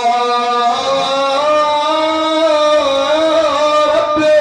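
A man's voice chanting a drawn-out melodic recitation over a microphone and PA, holding long notes with slow bends in pitch.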